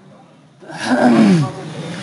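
A loud, drawn-out vocal cry that starts about half a second in and falls steadily in pitch over about a second.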